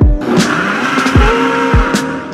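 Ninja countertop blender running, a steady whir as it blends a smoothie, fading near the end; lo-fi background music with a steady beat plays underneath.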